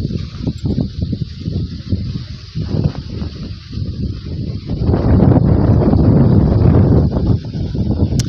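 Wind buffeting a phone's microphone: a loud, uneven low rumble that grows stronger about five seconds in.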